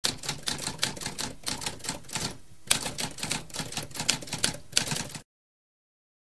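Typewriter keys clacking in a fast, irregular run of strokes, with a brief pause a little before halfway, stopping abruptly after about five seconds.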